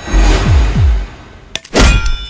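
Dramatic film sound design. Under a rising swell of noise, two deep booms fall in pitch in quick succession, and a sharp, loud impact hit comes near the end.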